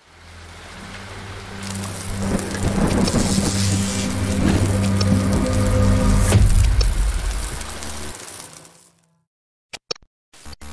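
Rain and thunder sound effects over a low droning tone, building to a peak about six seconds in and then fading out; a couple of brief clicks near the end.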